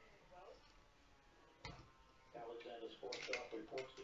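A single sharp click of plastic Lego pieces being pressed together, then a voice speaking in the second half.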